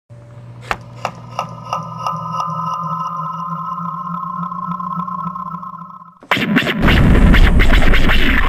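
Electronic intro drone: a steady high tone over a low hum, with sharp ticks about three times a second in the first two and a half seconds, swelling and then fading out. Loud music cuts in abruptly about six seconds in.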